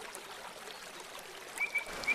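Faint outdoor background hiss with a few light ticks; near the end a thin, high steady tone starts up.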